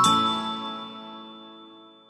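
Last chord of a short logo jingle, struck once and left to ring, fading away over about two seconds.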